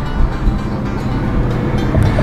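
Steady low rumble of a car's road and engine noise heard from inside the cabin, under background music.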